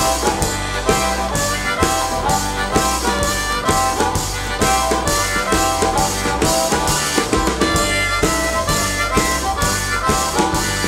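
Harmonica solo wailing over a live acoustic blues band: upright double bass, acoustic guitar and a snare drum keeping a steady beat.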